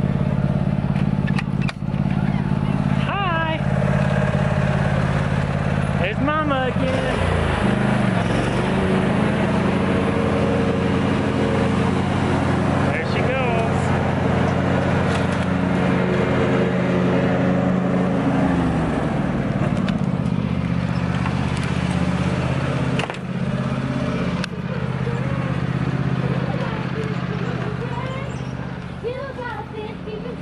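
Petrol lawn mower engine running steadily under load, its pitch dipping and recovering about seven seconds in and again near the twenty-second mark.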